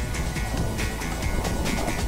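Background music with a steady beat, over a low rumble of wind and sea.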